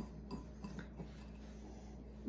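Faint scraping and a few light clicks from a dry spice rub being mixed in a small glass bowl.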